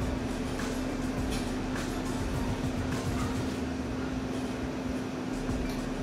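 A steady low hum with a background hiss, unchanging throughout, and no distinct event standing out.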